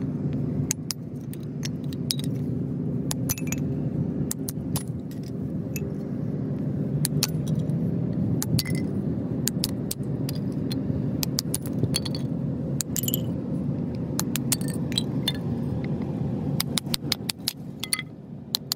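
Irregular sharp taps and clinks, some with a short metallic ring, as a hatchet strikes wooden boards down onto a small kindling splitter's blade, splitting them into kindling. A steady low background noise runs underneath.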